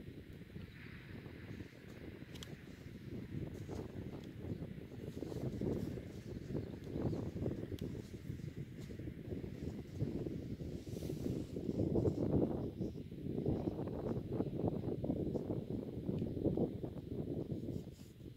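Wind buffeting the microphone in gusts, a low rumble that rises and falls and grows stronger from a few seconds in.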